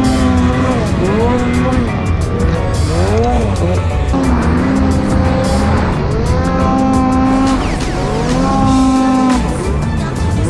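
Snowmobile engine revving up and down again and again as the sled works through deep snow, its pitch rising and falling several times and holding steadier near the end. A music track with a steady beat plays underneath.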